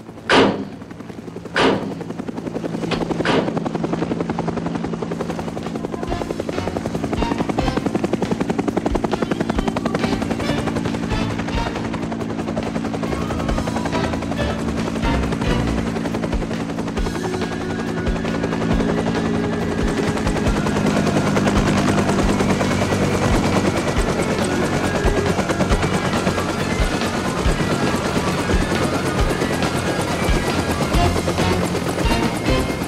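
Film soundtrack: a few sharp bangs in the first seconds, then a helicopter's rotor chopping steadily as it comes in over a sustained music score.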